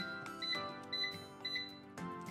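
Cosori air fryer touch panel beeping as its temperature buttons are tapped: short high beeps about every half second, setting the temperature to 380°F.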